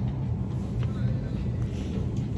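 Steady low rumble of road traffic, with a couple of faint clicks about a second in.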